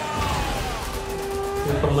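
Film trailer soundtrack: a rushing fly-by sound effect with a slowly falling tone, laid over the score. A new musical phrase starts near the end.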